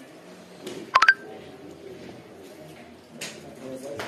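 A quick double electronic beep about a second in, over faint murmuring voices.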